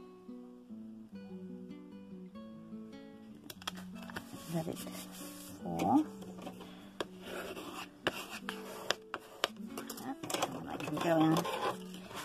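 Background acoustic guitar music, plucked notes. From about three and a half seconds in, crackling and rubbing of paper and card join it as the adhesive-backed print is pressed and smoothed onto thin cereal-box card.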